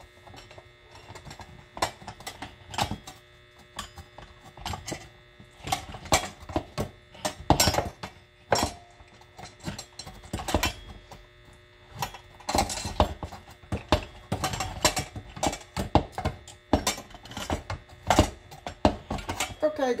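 Hand-cranked rotary food mill being turned over a metal bowl: the blade scrapes and clicks against the perforated disc in irregular strokes as tomatoes are pressed through.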